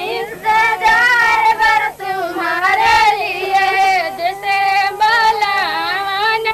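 A woman singing in a high voice, a melody with long held notes that waver and bend, with little or no accompaniment; a faint steady hum lies underneath.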